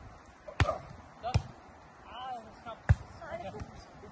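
A volleyball being struck by players' hands and forearms during a rally: three sharp hits, the last the loudest, with short shouted calls between them.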